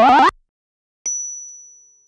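An intro sound effect: a loud rising, pulsing sweep cuts off abruptly, then after a short silence a single high-pitched ding rings out about a second in and fades away.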